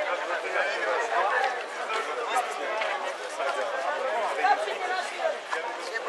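Crowd of teenagers chattering, many voices talking over one another with no one speaker standing out.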